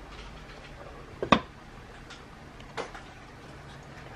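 Glass pot lid set onto a metal saucepan: a sharp clink about a second in, then a lighter click near three seconds, over a faint steady background.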